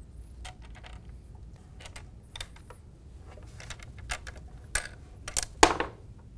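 Light clicks and taps of hands pushing thumb screws through the plastic and metal frame of a child's conversion trike to free its surrounding arms, with a louder clatter of parts shortly before the end.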